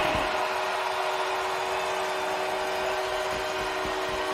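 Arena goal horn sounding a steady chord of several held tones, signalling a goal, over a cheering crowd.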